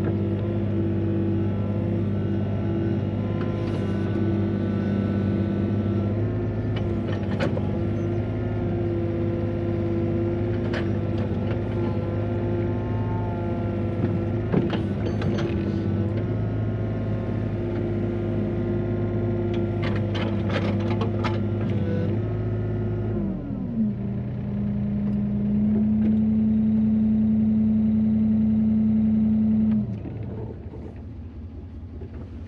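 Excavator's diesel engine and hydraulics running under load, heard from inside the cab, with occasional clanks and knocks as the machine digs and loads soil. About 23 seconds in the engine note drops, then a steadier, louder hum sets in and cuts off suddenly at the end.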